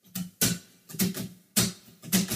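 Acoustic guitars: about five sharp percussive knocks and muted strums at uneven spacing, some with a brief low note ringing after them.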